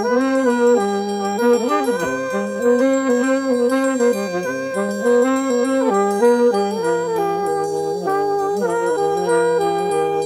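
Several jazz horns played at once by a single player, sounding held notes in close harmony that step together from chord to chord. One note slides down briefly about two seconds in.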